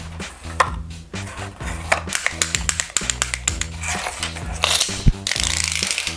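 A retractable tape measure's steel blade being pulled out of its case, giving a rapid ratcheting clatter of clicks that becomes a denser rasp near the end, with cardboard and packaging being handled.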